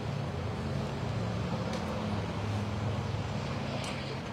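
Steady low engine rumble of passing motor traffic, over general street noise.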